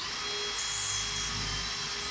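Cordless drill running at a steady speed, boring a hole through drywall into a wooden stud.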